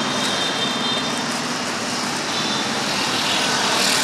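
Steady hum of street traffic, swelling slightly near the end.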